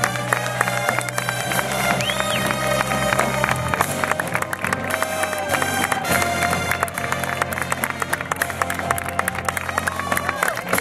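High school marching band playing sustained brass chords over drums, the low chord shifting a little under four seconds in, while a crowd applauds and cheers.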